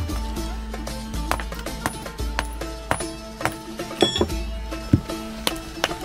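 Background music with held chords, over which a hammer chips at a stone in sharp, irregular taps, about two a second.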